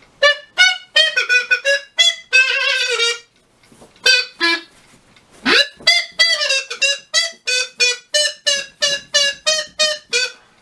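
A quick, bouncy tune of short, separate notes on a small wind instrument, each note held at a steady pitch. The notes come in a fast run, stop for about two seconds a little past the middle, then start again with a rising swoop and carry on in an even rhythm.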